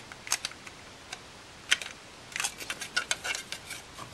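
Hard white plastic model-kit parts, the cab and hood of a 1:25 Mack DM600 kit, clicking and tapping against each other as they are handled and separated after a test fit. A few light clicks at first, then a busier run of small clicks in the second half.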